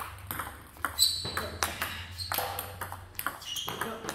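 Table tennis ball clicking off rubber-covered paddles and bouncing on the table in quick succession during a short-push and flip drill, about three hits a second.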